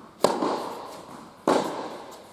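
Tennis ball struck by a racket, two sharp pops about a second and a quarter apart, each echoing in an indoor tennis hall.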